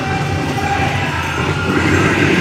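Powwow drum group: a chorus of singers in high, strained voices over a steady drumbeat.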